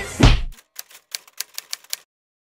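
Typewriter sound effect: a run of about seven sharp key clicks at an uneven pace. It follows a brief burst of club music and crowd noise that cuts off abruptly about half a second in.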